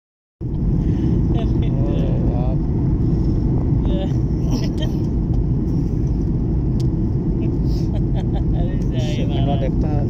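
Steady engine and airflow noise inside a Boeing 737 airliner cabin in flight, a dense low rumble that cuts in about half a second in. Faint voices come through it twice.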